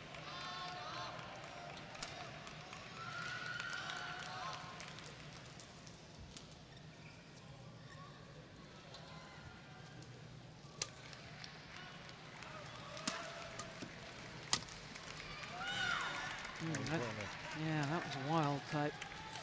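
Badminton rally in an indoor arena: a few sharp cracks of rackets striking the shuttlecock over a steady murmur of crowd voices. Voices swell loudly near the end as the rally finishes.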